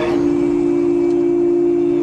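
A man's chanting voice in Quranic recitation holds one long, steady low note, a drawn-out vowel. A second steady ringing tone sounds just above it.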